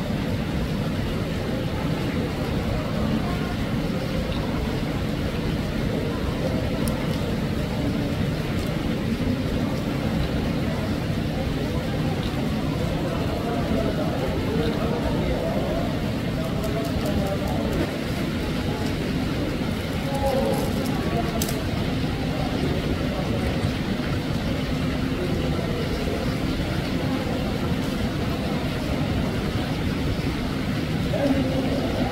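Steady rush of a small waterfall splashing into a pool, with people's voices talking faintly underneath.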